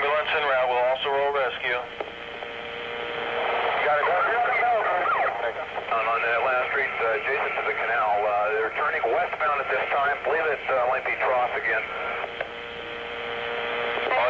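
Garbled two-way police radio traffic: voices through a narrow, tinny radio channel with a steady hum tone beneath. There is a short lull about two seconds in, then the talk resumes.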